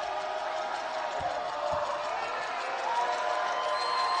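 A basketball bounced twice on a hardwood court, about a second apart in the middle, as a player dribbles at the free-throw line. Behind it is steady arena crowd noise with fans calling out.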